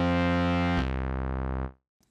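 Bitwig Studio's Polysynth software synthesizer, played from a MIDI controller keyboard, holds a sustained chord. Just under a second in it moves to a new chord with a lower bass, then fades out quickly near the end.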